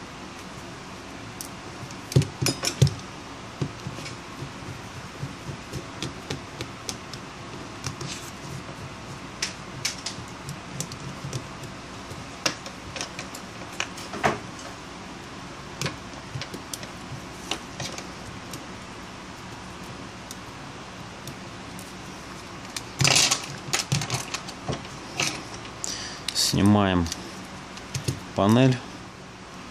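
Scattered small metallic clicks and taps of tweezers, a screwdriver and tiny screws being handled on a disassembled BlackBerry Q5. A louder burst of clattering handling comes about 23 seconds in.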